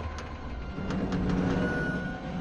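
Film sound effects after a vehicle crash: a low rumble dying away, with a few sharp clicks and creaks of metal as the upended jeep settles. A high steady tone from the score comes in near the end.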